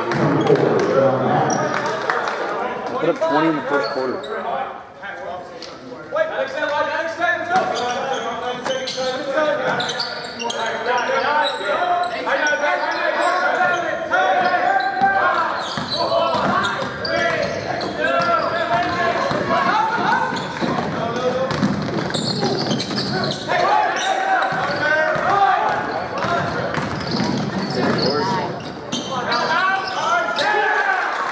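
Basketball game in a gymnasium: a ball bouncing on the hardwood court, over indistinct voices of players and spectators echoing around the large hall.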